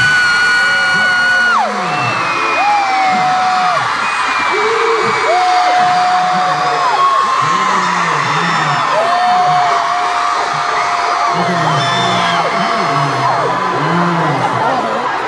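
A large arena crowd of fans screaming and cheering as loud as they can, answering a countdown. Several nearby voices hold long, high screams of a second or more over a dense wall of cheering that stays loud throughout.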